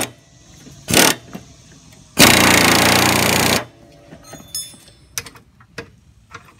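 A 3/8-inch air impact ratchet hammering in reverse on a mower deck spindle nut: a short burst about a second in, then a longer burst of about a second and a half, followed by a few small clicks. The nut does not break loose.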